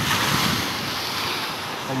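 Rough, irregular sea surf at high tide breaking on the shore, a steady rush of water that is a little louder at the start.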